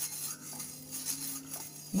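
A steel spoon stirring milk in a steel pot, softly scraping against the metal as curd starter is mixed into warm milk.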